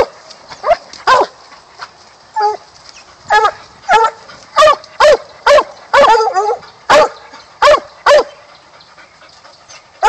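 Young black-and-tan coonhound barking repeatedly at a caged raccoon: about a dozen short barks, roughly two a second, with a lull near the end.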